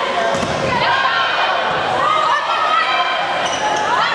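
Players and spectators calling out in an echoing gym during a volleyball rally, with a few knocks of the ball being struck.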